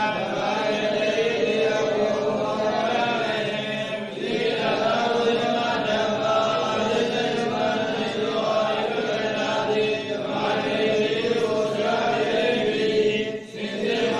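Buddhist Pali text recited in a sustained chant, held on a steady pitch with brief breaks for breath a few times.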